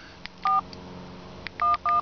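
Samsung mobile phone's keypad sounding touch-tone beeps as 411 is dialed for directory assistance: three short two-tone beeps, one about half a second in and two in quick succession near the end, with light key clicks between.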